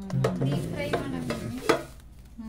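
Air fryer basket being unpacked by hand: packing paper rustling and the perforated crisper plate knocking against the non-stick basket, with a sharp clack near the end.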